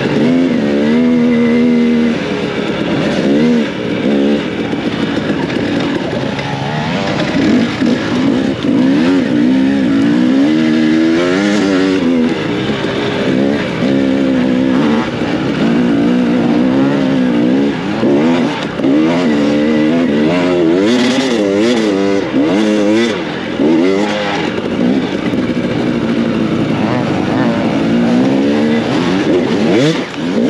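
Dirt bike engine heard from on board the bike, revving up and down over and over as the throttle opens and closes, with short drops in loudness between pulls.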